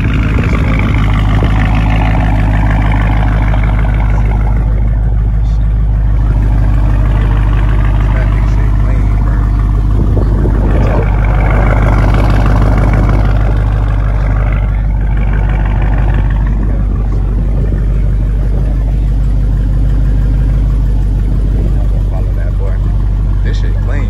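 Dodge Charger's engine idling through its quad exhaust, a steady low rumble.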